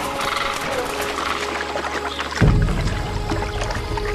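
Background music: sustained held tones, with a deeper bass layer coming in a little past halfway.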